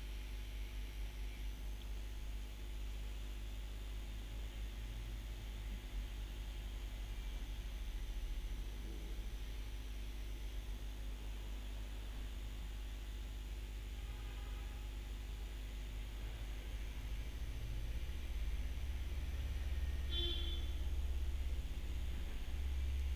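Steady low-pitched electrical hum under a faint hiss: the background noise of the recording with no distinct event. Two brief faint tones come in near the middle and near the end.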